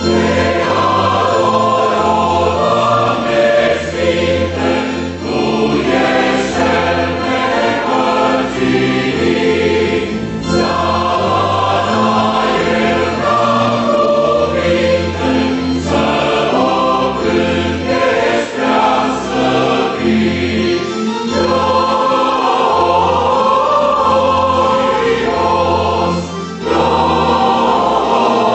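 Mixed choir of men and women singing a hymn in full voice, with a brief break between phrases near the end.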